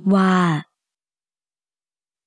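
A narrator's voice speaking one drawn-out Thai word, ending about two-thirds of a second in, followed by silence.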